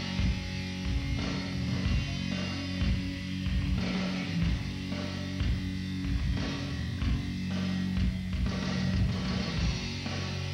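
Live rock band playing an instrumental passage: electric guitar, bass and drums, with steady bass notes under a regular drum beat and no singing.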